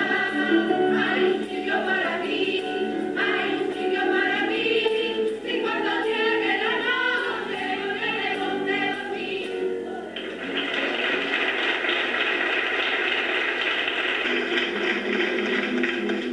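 A group of women singing a Spanish romería song together, clapping along. About ten seconds in, the singing stops and a steady, dense clapping carries on.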